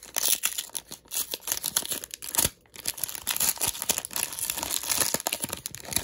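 Shiny Topps Chrome trading-card pack wrapper torn open and crinkled by hand: continuous crackling with a brief pause about halfway through.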